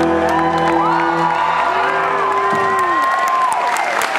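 The last chord of an electric guitar and band rings out over a loud live mix and cuts off about two and a half seconds in, while the audience whoops and cheers.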